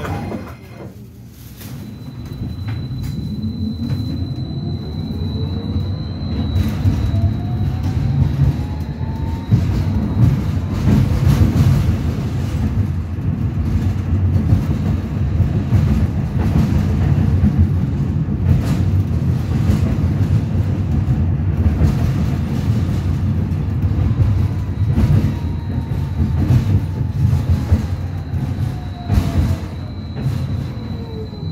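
Interior of a Belkommunmash BKM 802E low-floor tram on the move: a steady low rumble of wheels on rail with clickety-clack. A whine rises in pitch over the first eight seconds or so as the tram pulls away from a stop, and a similar whine falls near the end as it slows for the next stop.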